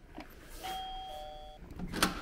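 KOCOM video intercom door station sounding its two-note electronic doorbell chime after its call button is pressed. The second note is lower and comes in about half a second after the first, and the chime lasts about a second. A brief burst of noise follows near the end.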